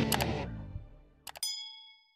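Background music fading out, then two quick clicks and a bright bell ding that rings out and fades: the sound effect of a notification bell being clicked in a subscribe animation.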